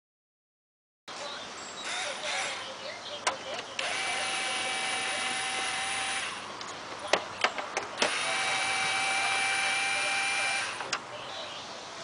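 Compact cordless drill/driver running at a steady speed on the fuel pressure regulator's bracket, in two spells of about two and a half seconds each. There are a few sharp clicks just before and between the two spells.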